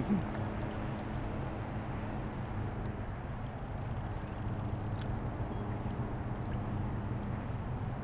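Steady outdoor background of wind and water noise on the microphone, with a low, even hum underneath and a few faint ticks.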